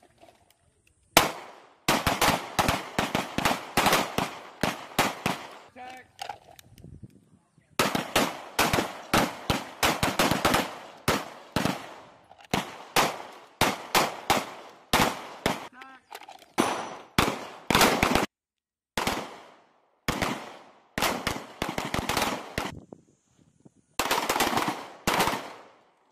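Several M18 9mm pistols firing at once from a firing line: rapid strings of shots, several a second and often overlapping, broken by lulls of a second or two.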